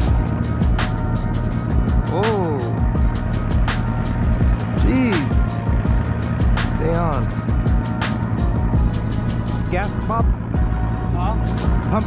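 Background music with a steady beat and gliding, voice-like melodic sounds over a steady low hum.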